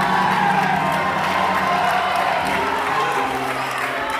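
Music with long held chords, the chord changing about three seconds in, under a congregation cheering, whooping and shouting in worship.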